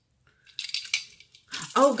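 A bunch of keys on a key ring jingling briefly as it is handled: a short cluster of light metallic clinks about half a second in.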